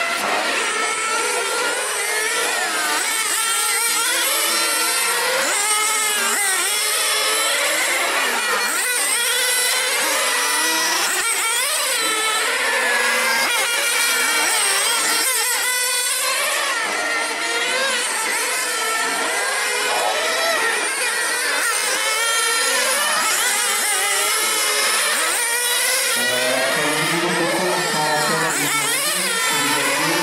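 Several 1/8-scale nitro radio-controlled race cars with small two-stroke glow engines running hard around the circuit, their many overlapping high-pitched whines rising and falling as they accelerate and brake through the corners. A lower note joins near the end.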